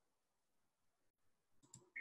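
Near silence: faint room tone, broken near the end by a brief cluster of clicks and a short high pip.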